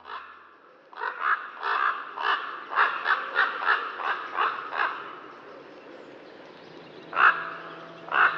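A crow cawing: a quick run of about a dozen caws over four seconds, then a pause and one more loud caw near the end.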